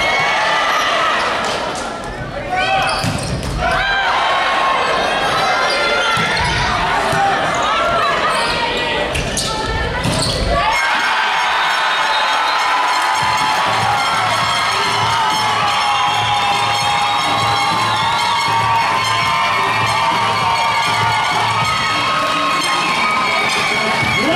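Indoor volleyball rally in a large hall: sneakers squeaking on the hardwood court, ball hits and players' shouts. About eleven seconds in this gives way abruptly to music with a steady beat, which runs on to the end.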